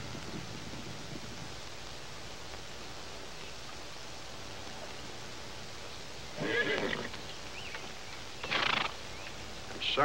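A horse whinnies twice, briefly each time: about six and a half seconds in and again about two seconds later, over a steady background hiss.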